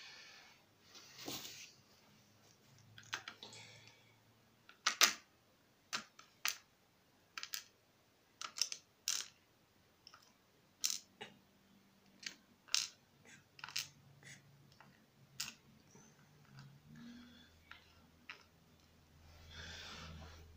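Irregular small sharp clicks and taps, one or two a second, from lock pins, the lock plug and picking tools being handled and set down on a plastic pinning tray, with soft rustling of hands.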